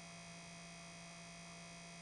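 Faint, steady electrical hum with a light hiss: a low mains-type hum and a fainter higher tone in the recording's background.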